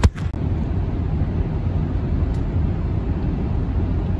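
Car interior road noise while driving: a steady low rumble of tyres and engine heard from inside the cabin, with a sharp knock at the very start.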